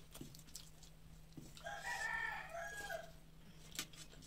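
A rooster crowing once, a call of about a second and a half near the middle, with a few soft clicks of fingers against a steel plate.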